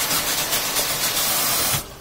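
Sechiyaki, a batter of noodles and beaten egg, sizzling in an oiled frying pan under a lid: a loud, steady frying hiss that cuts off suddenly just before the end.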